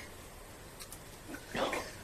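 A crow giving one short call about one and a half seconds in, with a few faint ticks before it.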